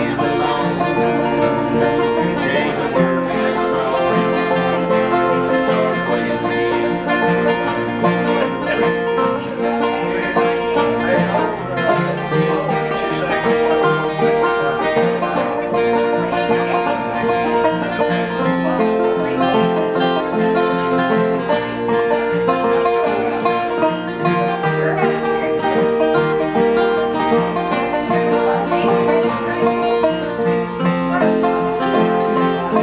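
Instrumental break of a country/bluegrass acoustic jam: acoustic guitars strumming with a banjo picking along, steady throughout, with no singing.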